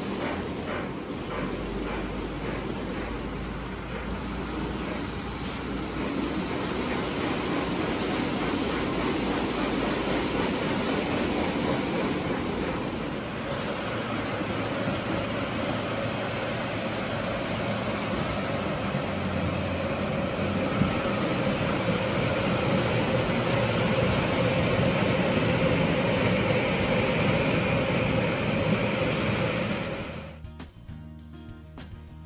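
Lionel O gauge model steam locomotives running on three-rail track, a steady rolling noise of wheels on the rails and the motor. About 13 seconds in the sound changes abruptly and grows a little louder as the Reading 2100 runs close by.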